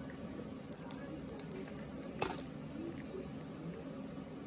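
Faint chewing and crumbling of a chunk of starch, with one sharp click about two seconds in.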